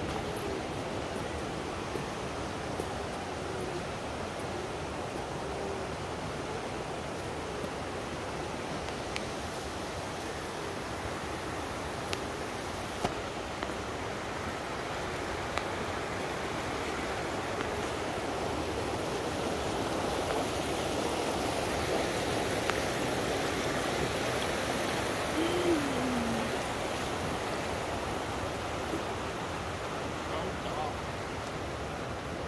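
Steady rush of creek water running over small cascades, swelling a little in the second half. There are a few light ticks and one brief falling tone about 25 seconds in.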